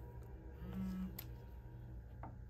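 DJI Agras remote controller powering on after a press-and-hold of its power button: a short low electronic tone about a second in, with fainter higher tones around it, then a small button click.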